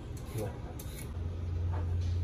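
A few light scrapes of a hand vegetable peeler on a raw carrot. From about a second in, a low steady rumble builds underneath and grows louder.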